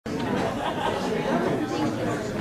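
Overlapping chatter of many people talking at once in a large hearing room, no single voice standing out.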